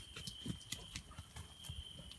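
Faint footsteps and soft thumps on earth and grass, with a stronger thump about half a second in, over a thin steady high tone.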